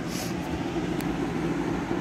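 Steady low background hum, with a short hiss near the start and a single click about a second in.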